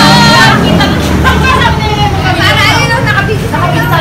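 Several people talking and laughing over one another, over a steady low drone like an engine running.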